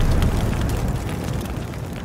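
Logo-sting sound effect: the fading tail of a deep cinematic boom, a low rumble dying away steadily with scattered fiery crackles on top.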